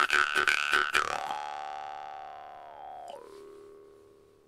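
Bass jaw harp played in a fast plucked rhythm, its twang shaped by the mouth into shifting overtones. About a second in the plucking stops and the last note rings on and fades, its overtone bending downward near the end.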